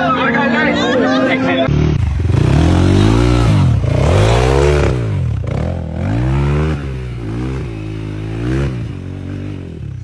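Dirt bike engine revving, its pitch rising and falling several times as it is ridden; it comes in about two seconds in, after a brief stretch of music.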